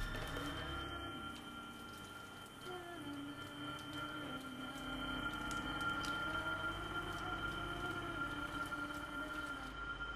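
Slow, sustained film-score music: a low line that shifts slowly in pitch under steady high held tones.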